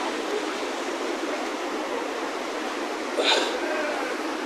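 River water rushing and lapping right at a camera held at the surface, with a brief splash about three seconds in.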